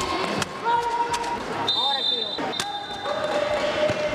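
Echoing voices and calls in a large sports hall, with scattered sharp slaps and knocks throughout.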